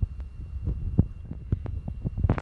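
Low steady rumbling hum with a run of irregular soft low thumps and a few sharper clicks.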